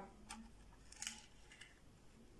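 Near silence with three faint light clicks, the strongest about a second in, as the plastic display base of a small model is turned by hand on a table.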